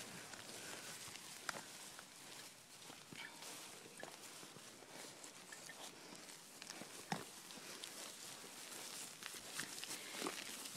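Faint footsteps through pasture grass, with a few soft knocks scattered through, the clearest about seven seconds in.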